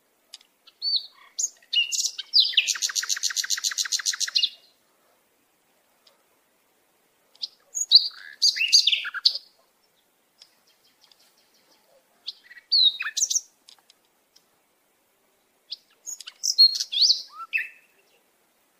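Birds chirping and singing in short, high phrases separated by gaps. About two and a half seconds in, one phrase is a fast, even trill of about ten notes a second.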